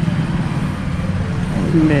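A steady low motor hum with a continuous noisy rush over it, like machinery or an engine running.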